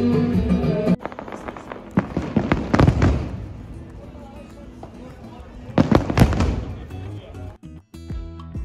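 Live music for about the first second, then two spells of fireworks crackling and popping, the first about two to three seconds in and the second around six seconds, with crowd murmur between them.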